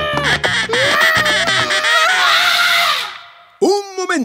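Two cartoon characters, a small boy and a duck, shouting at each other in a squabble: long wordless yells with a squawking, duck-like voice, fading out about three seconds in.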